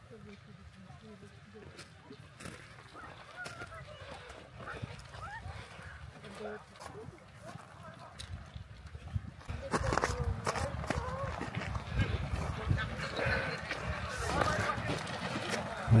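Distant shouts and calls from the riders and onlookers at a kok-boru game, sparse at first and growing louder and busier about two-thirds of the way in.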